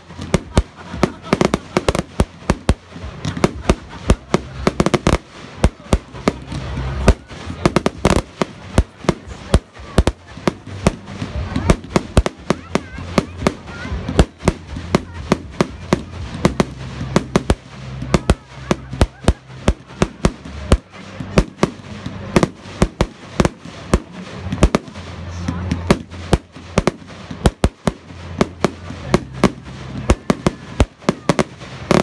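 Display fireworks bursting overhead in quick succession: sharp bangs and crackles, several a second, coming irregularly and without a break.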